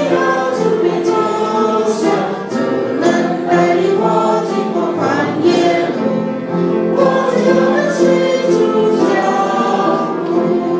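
Church congregation singing a hymn together, with a woman's voice leading on the microphone; steady, sustained sung notes.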